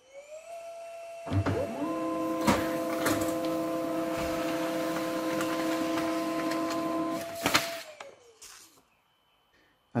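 HP Laser 137fnw laser printer printing a configuration page: its motor whines up, then runs steadily for about six seconds with a few sharp clicks of the paper feed, and winds down with a falling whine.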